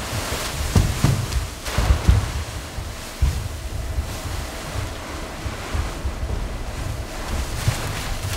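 Loose paper rustling and crunching as dancers leap into and scramble over a heap of it, with several dull thuds of landings in the first three seconds, then a steadier rustle.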